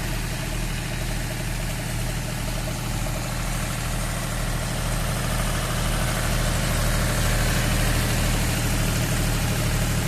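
John Deere 5105 tractor's three-cylinder diesel engine running steadily under load, driving a multicrop thresher whose drum and blower run with a steady rushing noise. The sound grows slightly louder in the second half.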